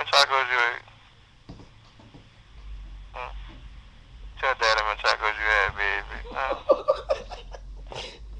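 Indistinct voices, unworded, in two short stretches: one at the very start and a longer one from about four and a half seconds in. A low hum lies under the second half.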